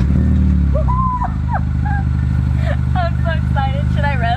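Hyundai Veloster Turbo's 1.6-litre turbocharged four-cylinder catching through a freshly installed Magnaflow cat-back exhaust. It revs up briefly on starting, then settles about a second in to a steady, deep idle.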